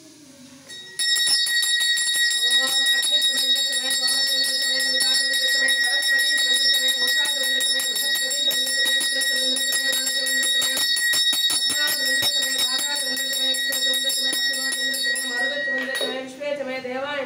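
Brass puja hand bell rung rapidly and without pause, a bright steady ringing over quick clapper strikes, starting about a second in and stopping right at the end.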